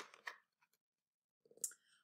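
Near silence, broken about a second and a half in by one brief faint rustle of a paper picture-book page being turned.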